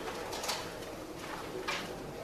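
Faint room tone with two soft clicks, one about half a second in and one near the end.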